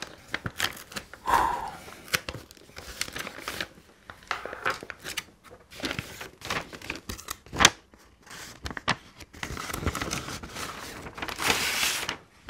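Paper padded envelope being cut open with a knife and torn apart by hand: a run of irregular crinkling, scraping and tearing, with one sharp snap about two-thirds of the way in and a longer rustle near the end.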